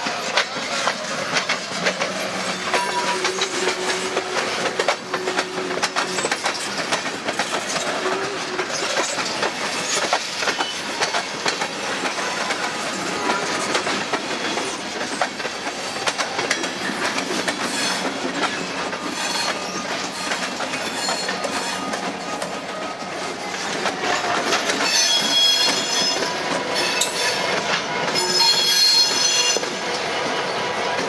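Railroad tank cars and a covered hopper rolling slowly by, wheels clicking and clacking over the rail joints with intermittent thin wheel squeal. It grows louder near the end, with two stretches of strong, high-pitched flange squeal as the shoving locomotive draws near.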